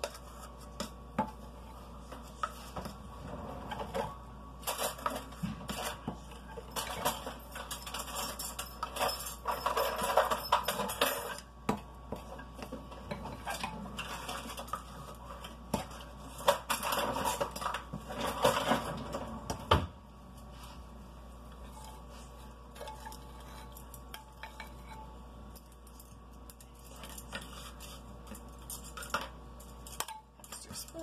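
A utensil scraping and clinking against a glass mixing bowl as thick frosting is stirred, in busy stretches of strokes through the first two-thirds with a sharp knock near the end of them, then only scattered clicks.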